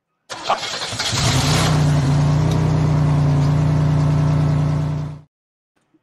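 A car engine starts up and climbs to a steady high rev, which holds for about four seconds and then cuts off abruptly. It is a recorded engine sound effect played as a segment bumper.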